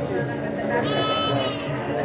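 A goat bleats once, a single high call of just under a second starting about a second in, over the background voices of a busy livestock market.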